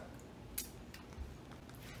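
Faint, short squelches and clicks of jello shots being sucked out of small plastic cups: one sharper click about half a second in and a softer one a little after a second.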